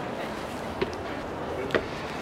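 Footsteps climbing the steps to a boat's flybridge: a few light knocks, two of them about a second apart, over a steady background hubbub.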